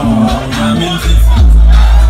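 Loud live music through a concert PA, with a heavy bass that swells about a second in. A crowd sings along and cheers over it.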